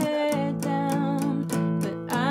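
Small-bodied Taylor acoustic guitar playing down-strummed power chords on the two low strings, a steady strum about four times a second, with a woman singing along.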